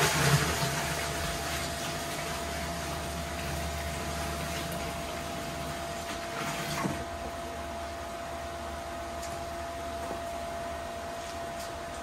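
Red wine pouring from a plastic bucket into a partly filled stainless steel tank: a steady splashing stream for about seven seconds that then stops.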